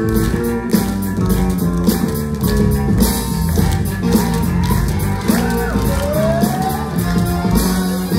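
Loud backing music with a steady beat, with sliding notes about five seconds in.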